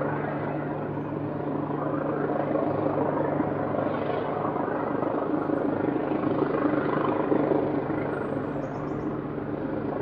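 Helicopter hovering: a steady low rotor hum under a rushing noise that swells a little midway and eases slightly near the end.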